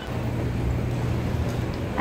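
Metro station ambience: a steady low hum over a general rumble, beginning suddenly just after the start.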